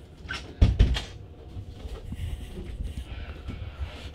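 Two dull thumps close together about a second in, over a steady low rumble.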